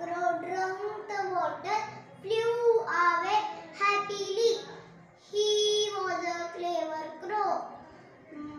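A young girl's voice telling a story in English, with her pitch rising and falling widely and one drawn-out syllable about halfway through.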